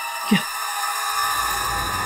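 Tense background score for a dramatic pause: a steady, held high drone, joined about halfway through by a deep low rumble. A short vocal sound is heard once near the start.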